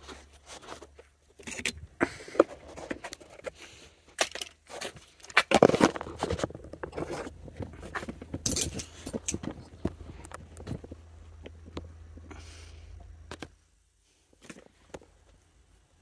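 Irregular clatter of small metal parts and tools being handled, with scrapes and knocks and footsteps. The densest, loudest clatter is about five to six seconds in. A low steady hum runs underneath and stops about thirteen seconds in.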